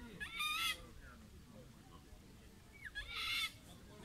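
A waterbird calling twice: two short calls, about half a second in and about three seconds in.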